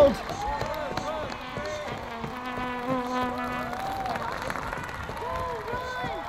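Street crowd of many voices cheering and calling out over one another. A single long buzzing note stands out of the crowd about two seconds in and lasts more than a second.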